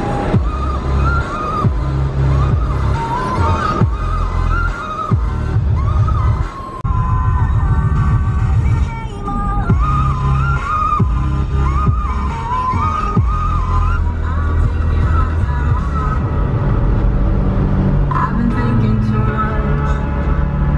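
Background music with a heavy, pulsing bass and a melody line over it.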